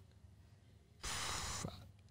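A man's short breathy exhale into a close microphone, about a second in, after a near-silent pause.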